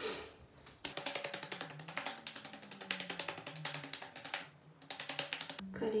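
Rapid, even clicking like typing on a keyboard, with a faint melody underneath. It starts about a second in and stops just before the end.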